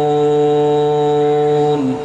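A man's chanted religious recitation through a microphone: one long note held steady on a single pitch, dipping slightly and fading away near the end.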